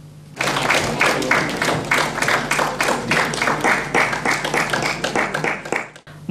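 Audience applauding: many hands clapping, starting about half a second in and stopping just before the end.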